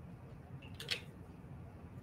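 Two faint, short spritzes from a small fine-mist pump spray bottle about a second in.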